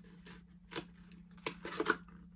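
A few short rustles and crinkles of packaging being handled, over a faint steady hum.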